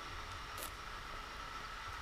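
Steady faint hiss with a thin high hum, the running background of a kitchen. There is one faint brief rustle a little after the start.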